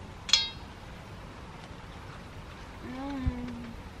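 A metal spoon clinks once against a stainless steel bowl, ringing briefly. Near the end comes a short, closed-mouth hummed "mm" with a soft knock in the middle of it.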